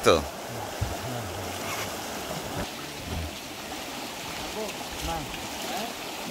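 Fast ebb-tide current rushing steadily through a narrow mangrove creek, a continuous churning water noise. It is the strong outflow of a new-moon spring-tide ebb.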